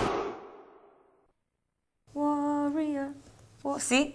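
The end of a rap song's backing music fading out over about a second into silence. About two seconds in, a woman's voice holds one long steady note, and speech begins just before the end.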